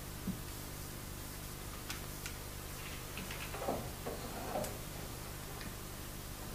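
Small plastic clicks and light scraping as a handheld digital recorder is fitted onto a small tripod, over a steady low hum and hiss.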